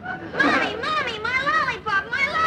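A young boy crying in long, high-pitched, wavering wails, without words.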